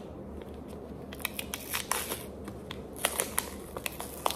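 Thin plastic film being peeled off and handled over an ice cream cup, crinkling and crackling in two short spells, about a second in and again about three seconds in.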